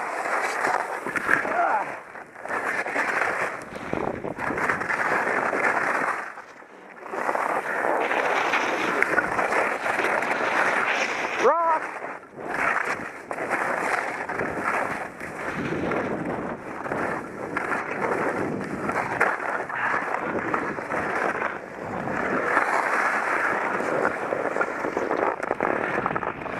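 Skis scraping and hissing over firm, chopped snow through a run of turns, swelling and easing with each turn and dropping away briefly about six seconds in.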